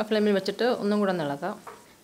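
A woman speaking in Malayalam, with a faint sizzle of onion-tomato masala frying on low heat underneath.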